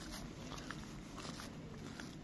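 Domestic tabby cat purring faintly while being scratched on the head.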